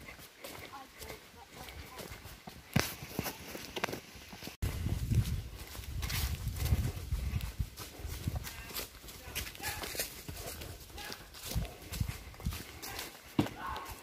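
Footsteps on a dirt woodland path: irregular scuffs and crunches of walking. A low rumble on the microphone comes in about four and a half seconds in.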